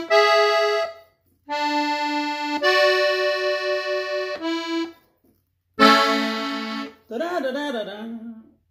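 Diatonic button accordion tuned in E (Mi) playing the ending phrase of a song in A major: a handful of held notes and chords, each about a second long, with short pauses between them. The loudest chord comes about six seconds in and fades away, and a man's voice follows briefly near the end.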